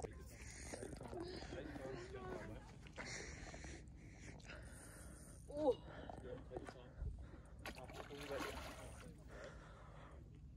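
Quiet: faint, low voices and a short exclamation about halfway through, over a steady low rumble, with a brief low thump about seven seconds in.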